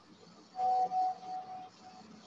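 A brief ringing tone, starting about half a second in and fading out in pieces after a little over a second, over faint room tone.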